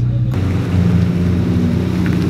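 Car engine idling steadily, its tone shifting slightly lower about a third of a second in.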